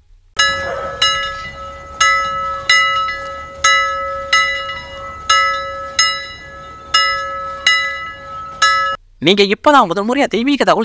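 A bell struck about eleven times, under a second apart, each strike ringing out over a steady held tone; it stops about nine seconds in.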